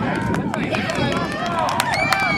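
Several spectators shouting and calling out over one another, with no clear words, and scattered sharp clicks.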